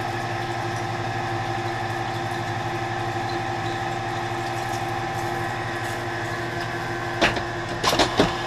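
Hardinge DSMA automatic turret lathe running steadily, a hum with several held tones, while a three-tooth hollow mill rough-cuts 1018 steel at low speed and low feed. A sharp clack about seven seconds in.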